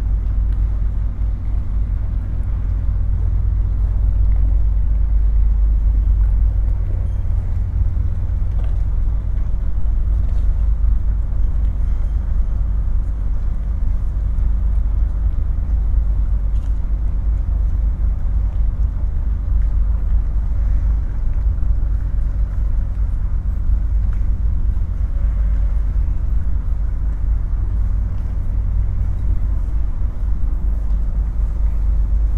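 Steady low engine rumble of boats at a ferry harbour, with outdoor traffic-like hum.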